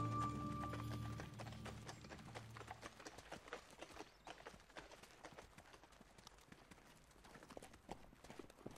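Background music fading out over the first couple of seconds, then faint, irregular clip-clop of a donkey's hooves mixed with footsteps.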